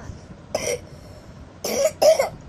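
A child coughing twice, in two short bursts: one about half a second in and one near the end.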